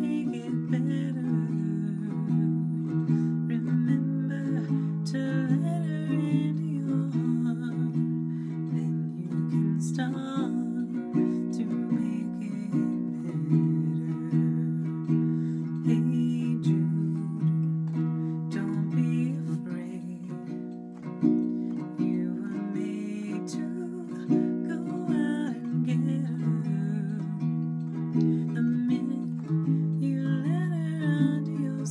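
Baritone ukulele strummed in steady chords, with a woman's voice singing the melody over it.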